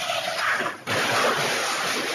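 Loud rushing noise of a car travelling at about 100 miles per hour, picked up by a security camera's microphone, with a short break about a second in.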